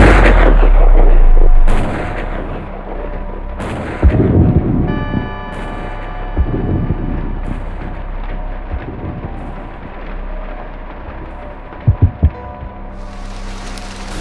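Film gunshot sound effects: a loud shot with a long booming tail at the start, then several sharp cracks over the next few seconds, the loudest about four seconds in, and three quick low thumps near the end.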